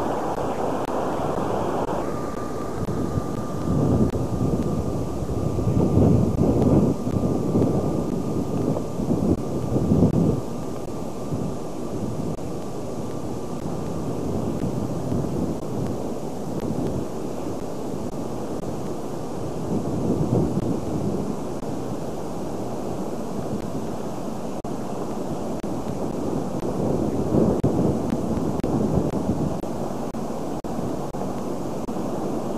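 Wind buffeting the microphone of a camcorder, a low rumble that swells in several gusts, with a faint steady high tone through the first half.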